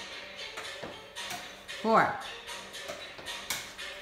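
Background music under a man counting 'four' aloud, with a few sharp taps as a cardboard paper towel roll is struck up into the air and caught by hand.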